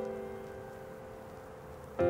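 Background piano music: a held chord rings and slowly fades, and the next chord is struck at the very end.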